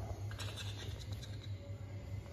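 Scratchy rustling from a hand rubbing and stroking a baby monkey's fur close to the microphone, with a quick run of short scratches about half a second to a second in, over a low rumble.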